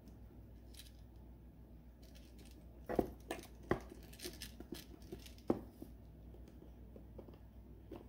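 Hands handling and pressing adhesive stud strips onto a hard clutch purse shell: a few sharp clicks and knocks about three seconds in and again around five and a half seconds, with faint small ticks between, over a low steady hum.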